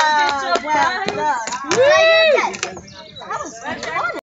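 Young children's high-pitched voices chattering and calling out, with one long call about two seconds in.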